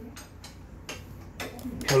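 A few sharp, irregular metallic clicks and taps of hand tools working at a scooter's rear disc brake caliper.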